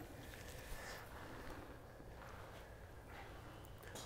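Quiet room tone in an indoor hitting bay, with a faint click about three quarters of a second in.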